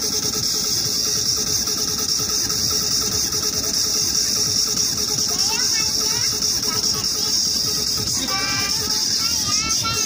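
Steady night-market din: a constant hiss and a pulsing mechanical hum, with children's voices breaking in briefly around five and eight seconds in.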